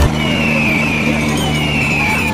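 Tractor diesel engine running steadily under load, with a faint high whistle that falls in pitch twice.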